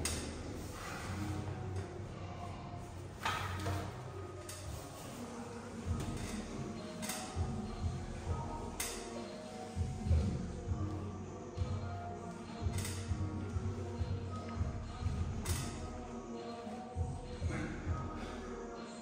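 Background music under a loaded barbell being bench-pressed for repeated reps, with a light metallic clink from the iron plates and bar every two to three seconds.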